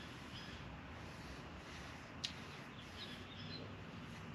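Faint outdoor background with a few short, distant bird chirps and a single sharp click about two seconds in.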